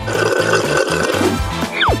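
Slurping through a plastic drinking straw for about a second and a half, over background music with a steady beat. Near the end comes a quick, steeply falling whistle-like glide.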